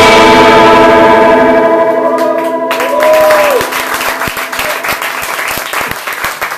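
A distorted electric guitar chord rings out and fades as the band's last note of a rock song. Audience applause and clapping break in about halfway through.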